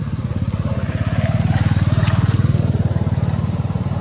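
A small engine running with a fast, even low pulse, swelling louder around the middle and easing off toward the end.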